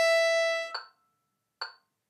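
A violin holding a bowed open-toned E5 half note, with evenly spaced overtones, that stops a little under a second in. A short click comes in the following silence, about one beat before the next note.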